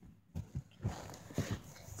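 Handling noise: a few short, soft knocks and bumps as the recording phone is moved about.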